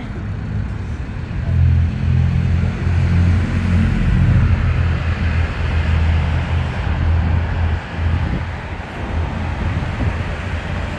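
Road traffic on a multi-lane road, a steady rumble of passing cars with tyre hiss, swelling about a second and a half in.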